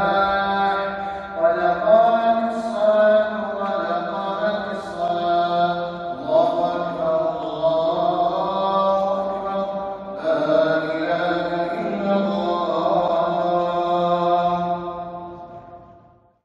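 A single man's voice chanting a prayer call in a mosque hall as Isha prayer begins, in long drawn-out melodic phrases. It fades out near the end.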